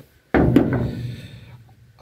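A brick set down on the ribbed steel bed of a pickup truck: a sudden thunk about a third of a second in, with a second quick knock just after, fading out over about a second and a half.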